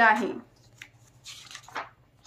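Pages of a paper workbook being flipped by hand: soft rustles and swishes of paper, the strongest near the end.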